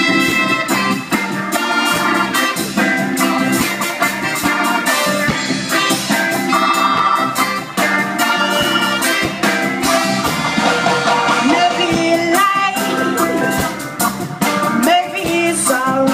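A live band plays upbeat music through the stage PA: electric guitars, keyboard, saxophone, trumpet and drum kit, with a singer's voice at times.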